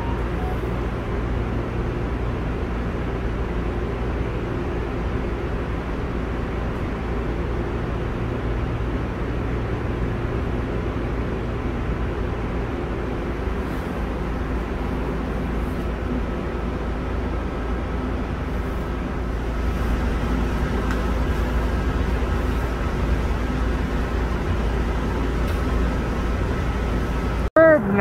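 Steady hum and rumble inside a CTrain light-rail car, with faint steady whining tones from its running equipment. The sound breaks off abruptly near the end, and a short falling tone follows.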